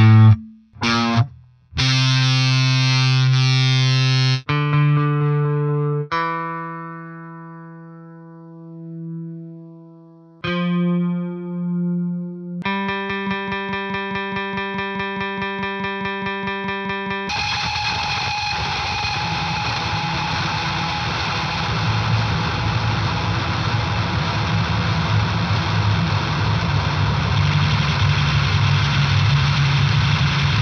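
Squier P-Bass played through a chain of effects pedals into an Ampeg bass amp. It opens with short, abruptly cut notes and a long note that fades away and then swells back up. About halfway through a fast, pulsing repeated note begins, and from a little past halfway a dense, distorted wash of sound builds and holds.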